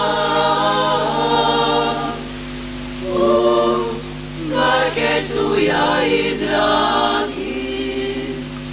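Women's folk vocal group singing a traditional Boka Kotorska song a cappella in close harmony, in long held phrases that break off briefly about two and four seconds in.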